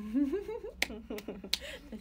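A young woman laughing, her voice rising and breaking into short pulses, with three sharp clicks in the middle of the laugh.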